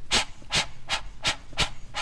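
Imitated steam-locomotive chugging: evenly spaced breathy chuffs, about five of them at roughly two and a half a second.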